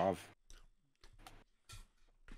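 A man's voice ends a word, then a few faint, scattered clicks and rustles, like small handling noises near the microphone.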